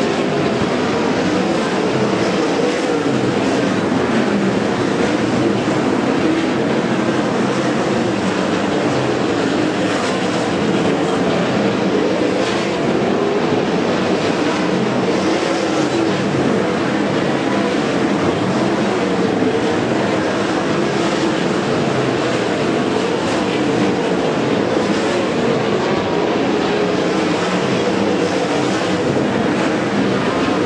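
A field of World of Outlaws winged sprint cars running laps on a dirt oval, their 410 methanol V8s blending into one loud, steady engine din heard from the grandstand.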